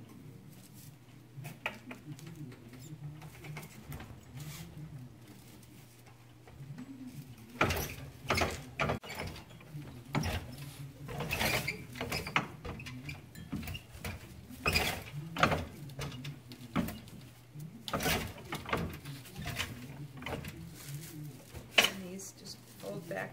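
Dry broom corn straw crackling and rustling as it is wound and pressed onto a broom handle on a wire-tensioning broom-winding machine, with clicks from the machine. The first third is quieter, with only small scattered clicks from hand-stitching a broom.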